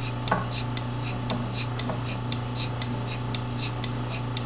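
Milking machine running on a cow: a steady vacuum-pump hum under the regular click and hiss of the pulsator, repeating about twice a second.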